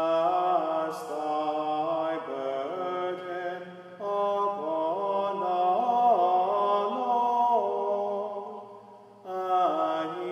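A single unaccompanied male voice singing Gregorian chant, an English introit sung in long flowing phrases with short breaths about four seconds in and again near the end. A long chapel reverberation trails behind the notes.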